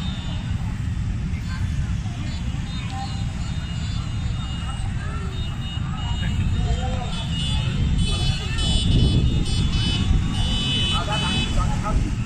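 Massed motorcycle engines running as a low, dense rumble under a crowd, with scattered shouts. From about eight seconds in, high steady horn-like tones sound over it.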